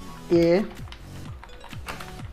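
Typing on a computer keyboard: a quick run of keystroke clicks.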